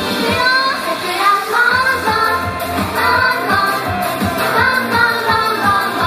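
Japanese idol pop song performed live: girls' voices singing the melody together into microphones over an amplified pop backing track. The bass and beat drop out briefly about half a second in and come back after about a second.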